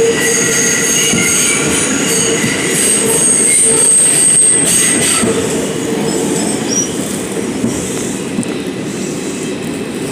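R142 subway train running through the tunnel and into a station, with a steady wheel-and-track rumble. High-pitched wheel squeal is heard for the first five seconds or so, then fades as the train slows along the platform.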